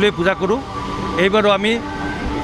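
A man speaking in two short stretches, into a cluster of press microphones, over a steady background hum.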